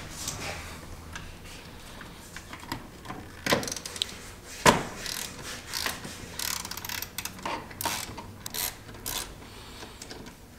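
Hand socket ratchet clicking in short runs as a seat-belt anchor bolt at the base of the seat is loosened, with two sharper metal knocks about three and a half and nearly five seconds in.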